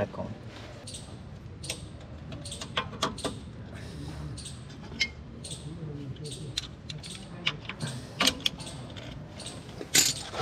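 Scattered metallic clicks and clinks of a steel drum brake shoe and its parking-brake lever being handled as the handbrake cable end is hooked onto the lever, with a few sharper clicks.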